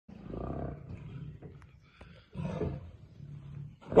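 Two tigers growling at each other in two low bouts, then breaking into loud roaring and snarling near the end as they start to fight.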